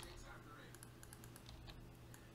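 Faint computer keyboard keystrokes: a quick cluster of light clicks in the middle and a few more later, over near silence.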